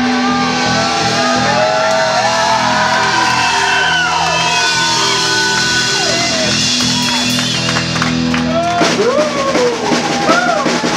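Post-punk band playing live: electric guitars ring out in held chords with wavering, sliding high lines over them. About nine seconds in, the drums come crashing back in.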